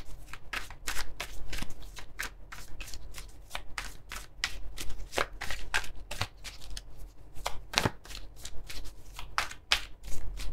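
A deck of tarot cards being shuffled by hand: a run of quick, uneven card flicks and slaps, about three or four a second.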